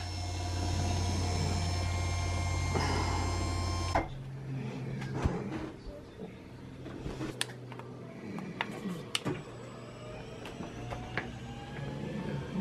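Electric motor of an overhead ceiling patient lift running with a steady hum and whine, stopping abruptly about four seconds in. Scattered light clicks and knocks follow, with a faint rising whine near the end.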